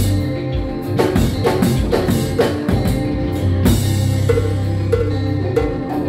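Live konpa band playing: drum kit strikes over sustained low bass notes and keyboards, with a cymbal wash a little past halfway.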